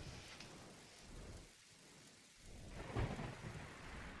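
Faint low rumbling handling noise from a hand-held camera being moved and turned, with a soft bump about three seconds in.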